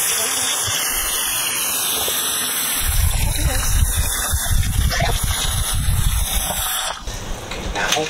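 Kitchen tap running, a steady rush of water as hollowed-out jalapeño peppers are rinsed, with heavier low splashing from about three seconds in. The rush drops away sharply about seven seconds in.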